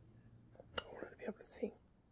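Faint whispered speech from a woman, under her breath, beginning about half a second in after a moment of near silence.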